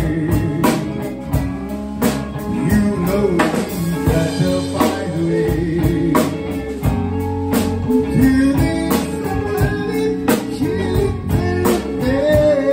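Live rock-and-soul band playing: two electric guitars, electric bass and a drum kit keeping a steady beat, with a singer's voice over them.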